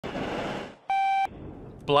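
A burst of hiss, then a single short electronic beep about a second in, one steady tone lasting about a third of a second.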